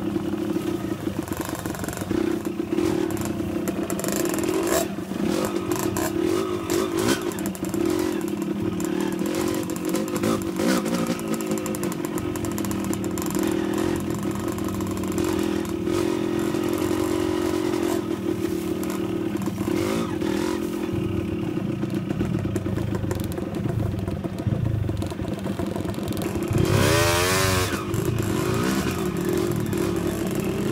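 Dirt bike engines running at low speed over a rough trail, with the knocks and clatter of the bikes over ruts and brush. The engine is revved up and down once near the end.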